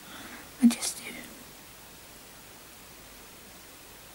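A woman's brief breathy vocal sound a little over half a second in, then faint steady room hiss.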